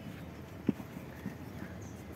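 A few soft knocks over a quiet outdoor background, the clearest about two-thirds of a second in.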